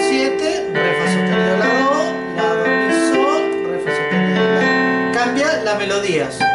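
Digital piano playing a slow bolero melody over held chords, with a new chord struck at about every second.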